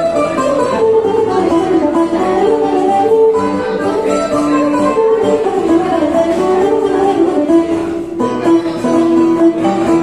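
Bouzouki picking a rebetiko melody over a strummed acoustic guitar accompaniment, in an instrumental passage without singing.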